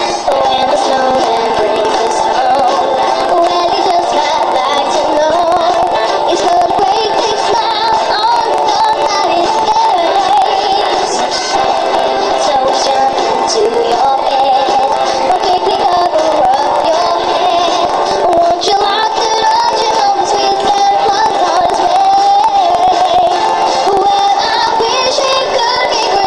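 A girl singing a pop song into a microphone over a backing track, the vocal line carrying on without a break.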